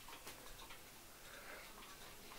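Faint ticking of mechanical clocks.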